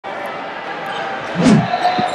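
Echoing arena ambience: steady crowd noise and background chatter, with one dull thud about one and a half seconds in.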